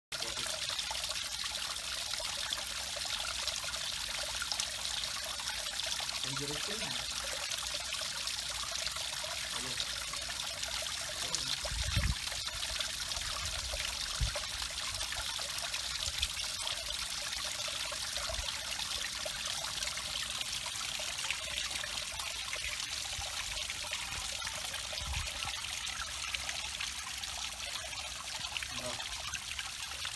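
Water from a small garden waterfall splashing and trickling steadily over two stone ledges into a shallow pond. A few short low thumps break through, the strongest about twelve seconds in.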